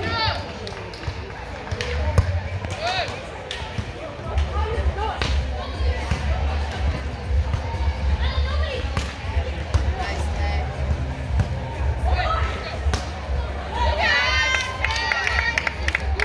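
Volleyballs being struck by hand on indoor sand courts, a scatter of sharp slaps that ring in a large hall, over a steady low hum. Players' voices and calls come from around the hall, with a loud shout about fourteen seconds in.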